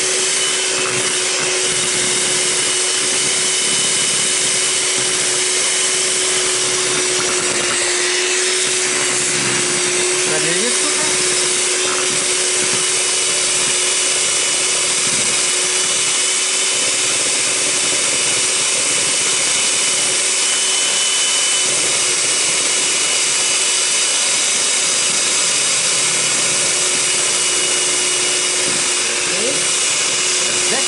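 Electric hand mixer whipping cream in a plastic jug: a steady motor hum with a steady whine, running at an even speed throughout.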